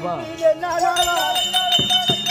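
Live folk-theatre music: a wavering melody line over drum strokes, with a steady high drone coming in about a second in.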